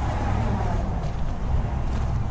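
Steady low rumble of outdoor background noise, with no distinct sound events.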